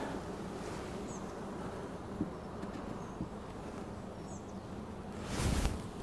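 Honey bees buzzing steadily around an opened hive, a colony disturbed by a late-evening inspection. Near the end comes a short rustling scrape as the wooden crown board is set down on the hive.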